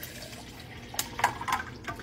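Liquid poured from a glass bottle into an insulated tumbler over ice: a steady trickle, with a few short clicks about a second in and again near the end.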